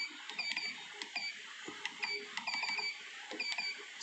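Keypad of an Essae SI-810PR receipt-printing scale beeping with each key press: a string of short, high beeps, irregularly spaced, with faint key clicks, as a PLU number is typed in and corrected.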